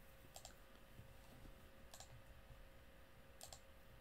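Near silence with faint clicking at a computer: three quick double clicks, about a second and a half apart, over a faint steady hum of room tone.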